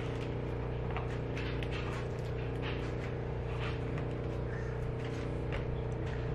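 A steady low hum runs throughout, with faint scattered soft ticks and rustles as a pizza slice is pulled from its cardboard box.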